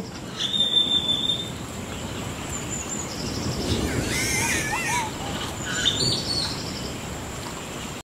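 Tropical forest birds calling over a steady background hiss: a high held whistle about half a second in, a wavering, warbling call around four to five seconds in, and short chirps scattered through.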